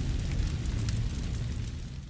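Fading tail of a fiery boom sound effect: a low rumble with scattered crackles that dies away steadily.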